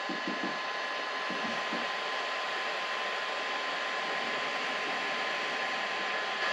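Small cooling fan of a Bambu Lab A1 Mini 3D printer running steadily, an even hiss with a faint thin whine in it.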